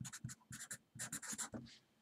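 Felt-tip marker writing on paper: a quick run of short scratchy strokes that stops shortly before the end.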